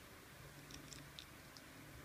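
Near silence broken by a few faint clicks of small plastic toy parts being handled and fitted onto an action figure, about a second in.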